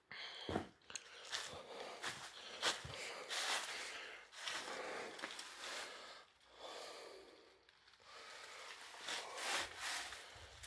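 A person breathing heavily close to the microphone, with handling rustle and a few sharp knocks.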